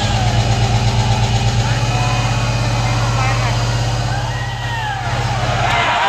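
Loud, deep bass drone with a fast pulse from a DJ sound system, stopping abruptly near the end, with a crowd's shouts over it.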